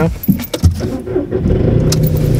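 A rattle and a thump inside a car, then the car's engine comes up to a steady hum about one and a half seconds in, as the car gets going.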